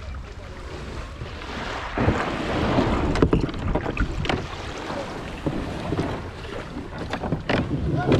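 Water splashing and sloshing around a sit-on-top fishing kayak as it comes ashore in the shallows, with wind on the microphone. About two seconds in the splashing gets louder, with many short sharp splashes and knocks as the paddler's legs go over the side into the water.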